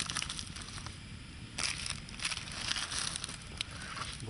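Open wood fire burning, with frequent irregular crackles and pops and one louder pop about one and a half seconds in.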